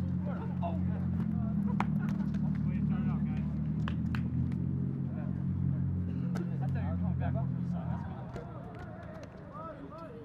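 A motor vehicle's engine running at a steady pitch, fading away about eight seconds in, with distant shouting voices and scattered clicks over it.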